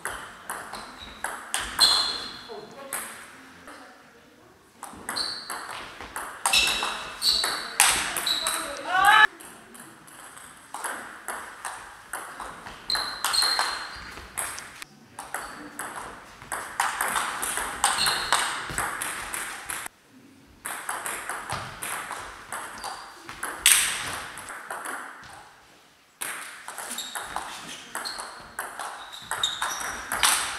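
Table tennis ball rallies: quick runs of sharp clicks as the celluloid-type ball hits bats and table, broken by short pauses between points.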